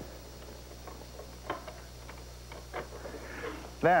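A few faint, short clicks and light scratches over quiet room tone: a utility knife scribing marks into oak at the ends of a brass piano hinge, with the hinge being handled.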